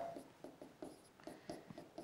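Marker pen writing on a board: a quick run of faint, short strokes of the nib.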